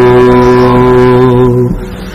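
Men's voices singing a slow Hasidic melody (niggun), holding one long low note that breaks off about 1.7 s in for a short pause.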